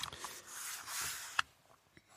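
A person drawing a breath for about a second and a half, ending in a short sharp mouth click.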